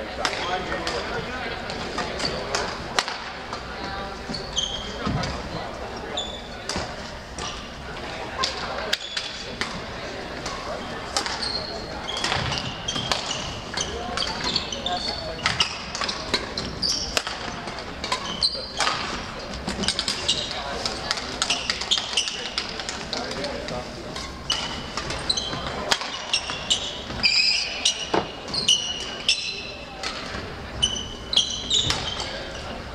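Badminton play on a gym's hardwood floor: sharp racket strokes on the shuttlecock and frequent short squeaks of sneakers, with the squeaks coming thickest near the end, over background chatter of voices.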